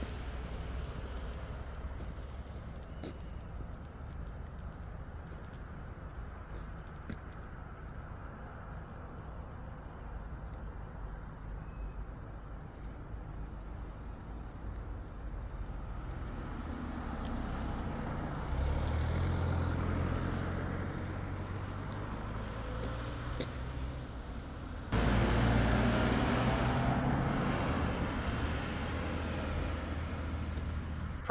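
Road traffic: a motor vehicle's engine hum grows louder about 18 seconds in, and a louder stretch of engine and road noise starts abruptly about 25 seconds in, over a steady low rumble.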